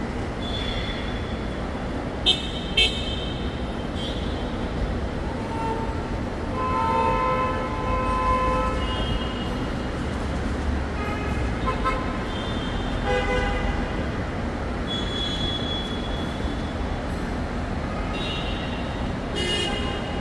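Outdoor road traffic: a steady low rumble of vehicles with short horn toots at intervals, two sharp, loud ones a couple of seconds in.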